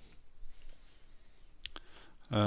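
Two soft clicks on a computer, a faint one about a third of the way in and a sharper one near the end, as the program is started, against quiet room tone.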